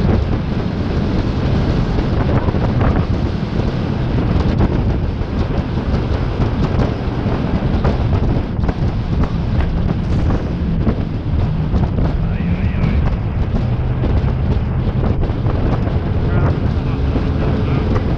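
Jet boat under way on a river: its 6.2-litre V8 engine runs steadily under heavy wind buffeting on the microphone and rushing water, with spray coming over the bow.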